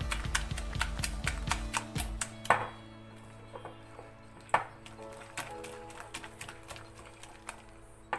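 A metal spoon stirring thick batter in a glass mixing bowl, clicking against the glass several times a second at first, with two sharper clinks about two and a half and four and a half seconds in. Quiet background music plays under it.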